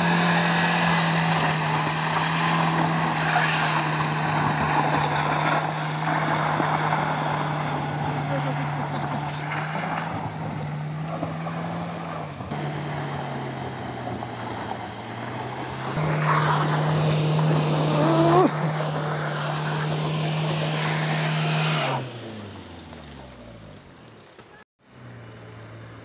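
A car engine held at high revs as the vehicle ploughs through deep mud, with tyre and mud noise over it. The revs drop for a few seconds about halfway, climb back, then fall away and fade near the end.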